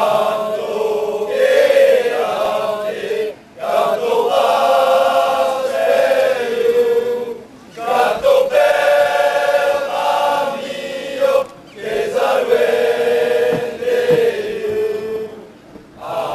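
A group of men singing an anthem together, in held phrases of about four seconds with short breaks between them.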